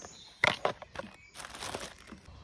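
Handling of a clip-lid plastic box: a sharp plastic click about half a second in and a few lighter knocks, then a plastic bag crinkling as it is pulled out of the box.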